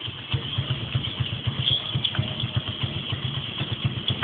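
Small motorcycle engine idling with an even, fast beat.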